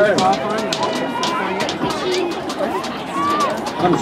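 Spectators talking and laughing close to the microphone, with some background chatter and a series of short sharp taps.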